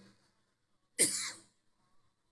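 A man coughs once, short and sharp, about a second in, into the podium microphone.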